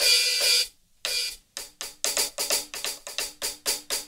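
Hi-hat sample of a KAT KT-200 electronic drum kit's Funk preset, struck on the hi-hat pad. An open hi-hat washes for under a second, then after a brief pause comes a quick run of short, trashy closed hi-hat strokes.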